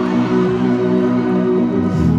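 Live indie-pop band playing an instrumental passage of held, sustained chords with no vocals, recorded from within the audience.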